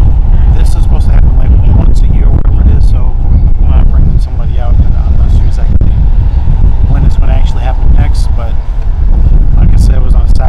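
Loud, steady low rumble of passing vehicles that swells up at the start, with a man's voice partly heard through it.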